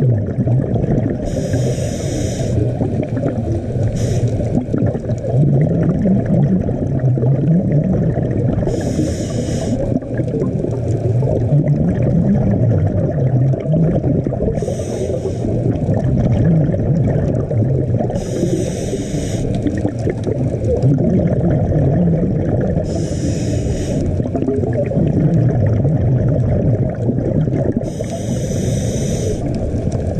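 Scuba breathing heard underwater: exhaled bubbles from a regulator bursting out in short hissing gushes about every four to five seconds, over a steady low rumble of water against the camera.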